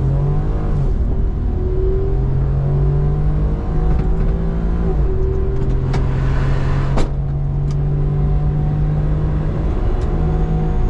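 Cabin sound of a Honda Z kei car driving on the road. Its small turbocharged three-cylinder engine hums steadily, the note climbing slowly and then dropping as the automatic gearbox shifts, a few times over. Two sharp clicks come a second apart past the middle.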